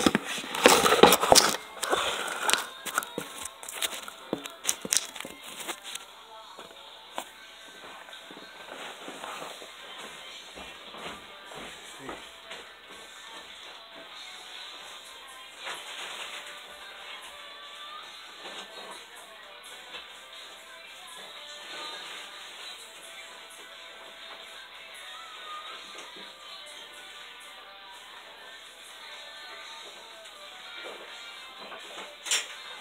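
Knocks and rustling from a phone being handled and set down for the first several seconds, then faint background music and voices.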